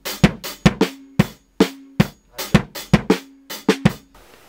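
Drum kit played alone: an uneven groove of sharp stick and drum strokes, about four a second, some leaving a short low drum ring, with a brief break about one and a half seconds in.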